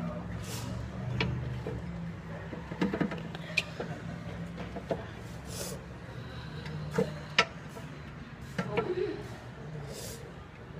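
Scattered sharp metal clicks and knocks as a fire truck's folding diamond-plate step and its hinge are handled. The sharpest knock comes about seven seconds in, over a low steady hum.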